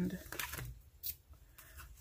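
Paper pages of a ring-bound sticker book being flipped and handled, giving a few soft rustles and light clicks.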